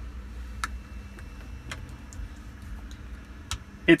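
A few separate light clicks, irregularly spaced, over a low steady hum.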